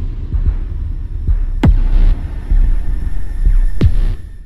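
Electronic intro sound design for an animated logo: a deep, throbbing bass pulse with two sharp hits that swoop down in pitch, one after about a second and a half and one near the end.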